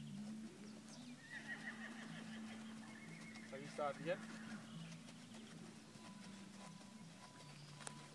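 A horse whinnying briefly, a short call with a quick, quavering pitch about four seconds in, over a faint low steady hum.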